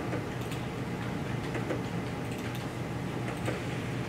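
Scattered light clicks of a computer mouse and keyboard over a steady low room hum.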